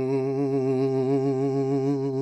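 A man's singing voice holding the final note of a folk song, a long steady hummed 'ng' at the end of the word 'herring', at one unwavering pitch.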